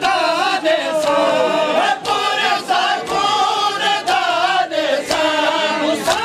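A group of male voices chanting a noha, a Shia lament sung in unison with sliding, drawn-out lines. Sharp strokes fall about once a second, in time with the chant, the beat of matam chest-beating.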